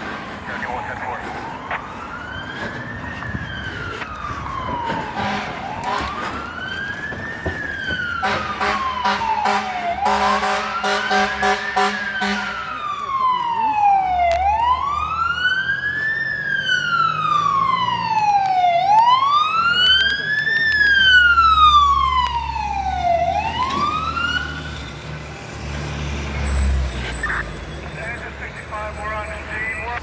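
Fire engine siren on a wail, rising and falling about every four and a half seconds, with a long horn blast about eight seconds in. The siren stops about 24 seconds in, leaving a low diesel engine rumble as the truck pulls up close.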